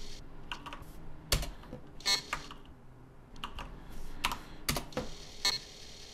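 Computer keyboard keys pressed one at a time: about ten separate clicks at uneven intervals, with short pauses between them.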